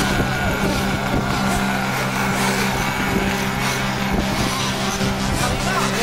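Small two-stroke nitro glow engines of 1/8-scale RC truggies buzzing and revving at a race track, with a rising whine near the end.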